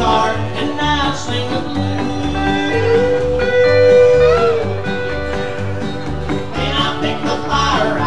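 Live rockabilly band playing an instrumental break: upright bass pulsing steadily about twice a second under strummed acoustic and electric guitars, with a steel guitar lead of held, sliding notes, most prominent about three to four and a half seconds in.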